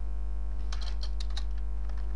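Typing on a computer keyboard: a quick run of about half a dozen key clicks a little past the middle. Under it runs a steady electrical mains hum.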